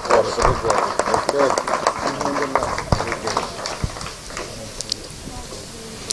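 Audience applauding, with voices talking over it; the clapping dies away about two thirds of the way through.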